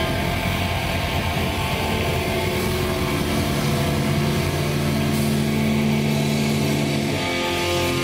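Hard rock band playing live: distorted electric guitars over a drum kit, with held chords that change every few seconds.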